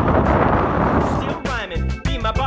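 Wind buffeting the microphone of a moving bicycle, then a pop song with a sung vocal over a beat comes to the fore about one and a half seconds in.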